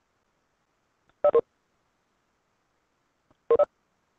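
Two short electronic two-note chimes, a little over two seconds apart, from the Webex video-conference software: notification tones of the kind played when a participant joins or leaves the call.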